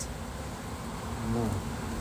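Honeybees buzzing around an opened hive: a steady hum of many bees.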